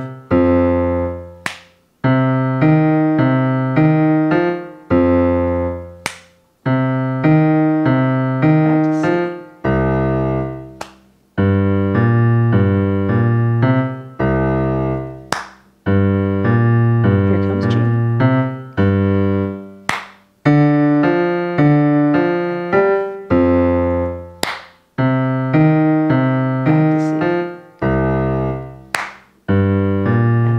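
A 12-bar blues boogie in C played on a digital piano: a walking bass line with right-hand chords, in phrases that stop every few bars for a single sharp hand clap in the rest.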